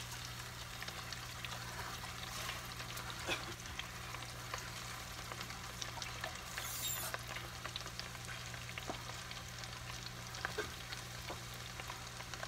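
Breaded onion rings deep-frying in oil heated to about 350 °F: a steady sizzle with many small scattered crackles.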